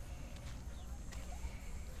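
Footsteps on a sandy, stony shore path, a few irregular faint steps, over a steady low rumble of wind on the microphone.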